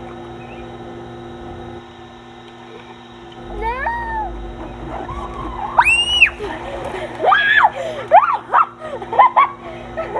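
High-pitched wordless squeals and cries from girls, each sliding up and down in pitch. They start about three and a half seconds in and come again and again through the rest.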